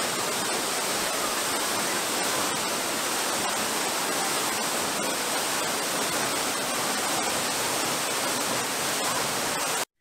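Taranaki Falls, a waterfall pouring into a rock pool, making a steady rush of falling water that cuts off suddenly near the end.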